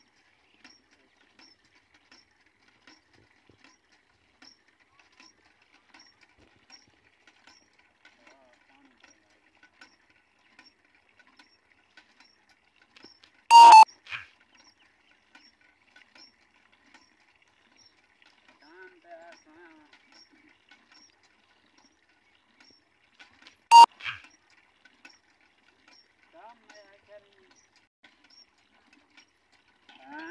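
A donkey drinking from a metal bowl at a hand pump that is being worked: faint, regular ticking about every two-thirds of a second, broken by two loud, sudden bursts about ten seconds apart.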